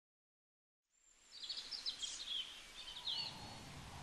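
Ambience fades in about a second in: a soft steady hiss with a few quick bird chirps.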